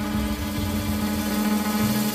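Live 1960s jazz quintet of alto saxophone, violin, guitar, double bass and drums playing, with one long held mid-range note over moving low bass notes.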